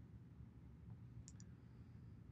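Near silence: room tone with a faint low hum, broken by two faint, quick clicks a little over a second in.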